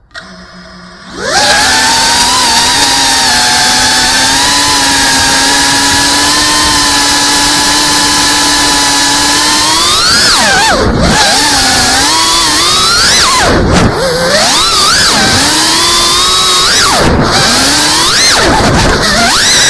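FPV racing quadcopter's brushless motors and propellers, heard from the drone itself: they spin up to a loud steady whine about a second in, then, once the drone is flying, the pitch rises and falls sharply with throttle punches and chops, dropping out briefly three times.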